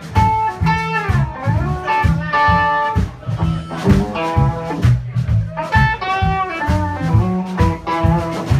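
Live blues-rock band playing: electric guitar, bass guitar and drums, with a lead line that bends up and down in pitch over a steady bass rhythm.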